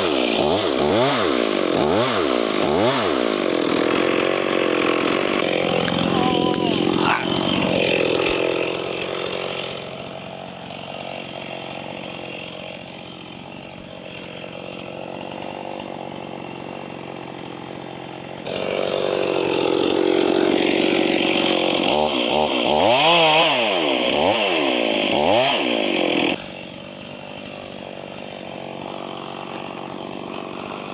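Stihl chainsaw running at high revs, dropping to idle about ten seconds in, revving up again for several seconds, and falling back to idle suddenly near the end. These are the felling cuts in a balsam and a birch that are to be pulled down.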